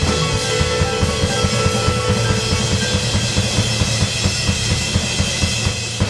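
Live jazz trio of piano, bass and drum kit playing a driving closing number, with the drums keeping a steady, quick, busy beat under held chords.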